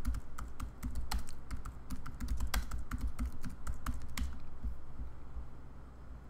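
Quick, irregular typing on a computer keyboard, a run of key clicks as a search phrase is entered, stopping about four seconds in.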